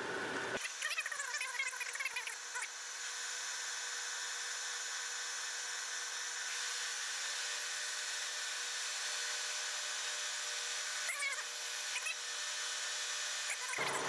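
A 7/8-inch machine reamer cutting through an oiled, drilled bore in a steel bushing turning in a lathe, giving a steady high-pitched hiss with a faint steady tone. Short squealing chirps come from the cut about a second in and again about eleven seconds in.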